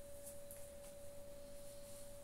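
A faint, steady pure tone held at one pitch throughout, with a few soft rustles of a terry towel being folded.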